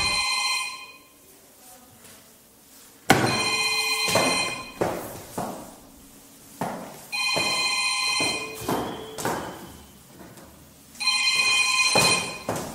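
A mobile phone ringing: three rings about four seconds apart, each lasting about a second, with short quiet gaps between them.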